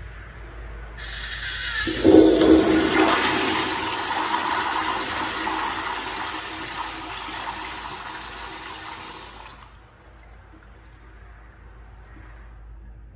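Commercial tankless toilet flushed by the chrome handle of its flushometer valve: a hiss builds from about a second in, then a loud rush of water from about two seconds in that runs for roughly eight seconds and cuts off fairly sharply, leaving a faint wash of water.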